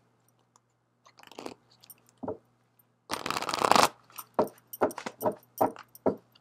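A deck of oracle cards being shuffled by hand: a few soft clicks, then a quick riffle of the cards about three seconds in, followed by several short sharp card snaps and taps.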